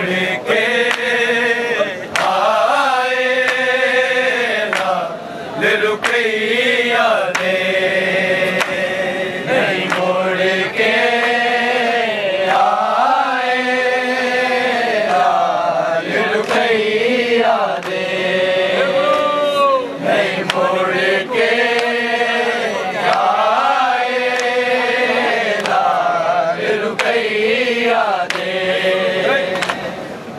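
A group of men chanting a Punjabi noha (Shia lament) together, unaccompanied, in long drawn-out phrases with brief pauses between them.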